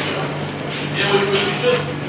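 People talking indistinctly, their voices clearer from about a second in, over a steady low hum.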